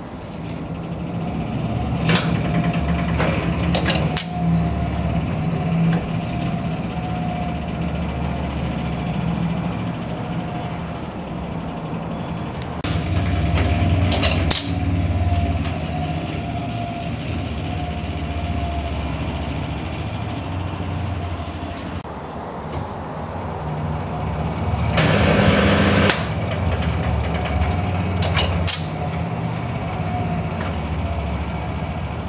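A 1960s Fuller 33 kV on-load tap changer mechanism being run through its taps. A steady low mechanical hum with a faint, slowly falling whine swells and fades as the contact carriages travel along the screw shafts. Sharp clicks sound as the contacts switch, with a harsher burst about a second long near the end.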